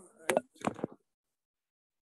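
A few short knocks and handling bumps from a phone or tablet being picked up and moved, all within the first second.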